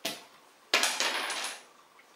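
A small wooden interlocking star puzzle tossed onto the bed, landing with a short noisy clatter about three-quarters of a second in that fades away within a second.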